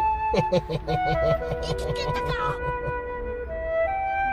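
A flute playing a slow melody of long held notes. A voice sounds over it during the first second or so.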